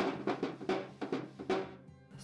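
A rag scrubbing oil wax onto a hollow painted brass trough in a quick run of rough, loud strokes, about three or four a second, that fade out near the end. Background music plays underneath.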